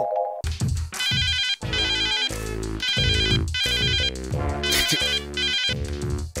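Electronic music starting suddenly about half a second in: a bass line under a high warbling trill that repeats in short bursts, much like a phone ringtone.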